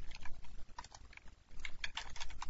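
Scattered computer keyboard keystrokes, a few single clicks and then a quick run of several near the end, over a faint low hum.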